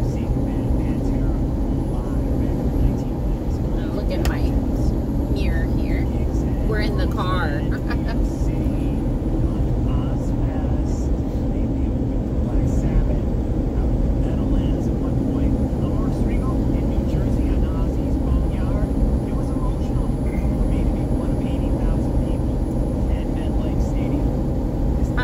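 Steady road and engine rumble inside the cabin of a moving car, with faint brief voices in the background a few seconds in.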